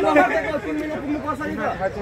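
Men's voices chatting to one another.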